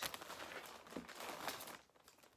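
Plastic bag crinkling and rustling as bagged doll wigs are handled, stopping near the end.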